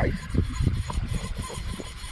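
Low rumble with irregular soft knocks: fishing rod, line and a hooked bream being handled right beside the camera.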